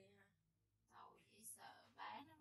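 Faint whispered speech, very quiet. It trails off at the start and resumes, breathy, about a second in.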